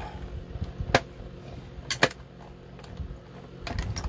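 Hand-cranked Stampin' Up! Cut & Emboss machine running a plate sandwich with a circle die through its rollers, a low rolling rumble with sharp clicks, two about a second apart and a few more near the end.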